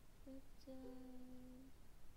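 A woman humming softly: a short note, then a steady held note of about a second.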